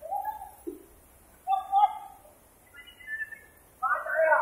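Young men hooting and yelling in short, high-pitched calls, in three brief bursts with gaps between.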